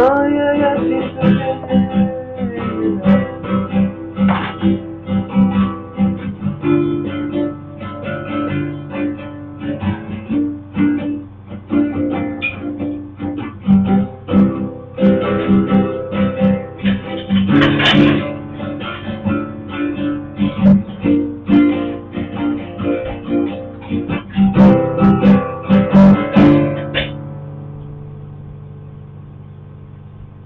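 Acoustic guitar played alone, strummed and picked chords with no voice, ending near the end on a last chord that rings and fades away.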